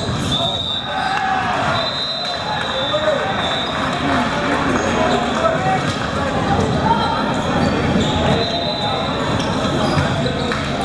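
Volleyball players and spectators calling out and talking over one another, with a ball bouncing on the court and brief high sneaker squeaks on and off.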